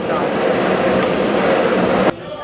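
Car engines running steadily, with people talking in the background.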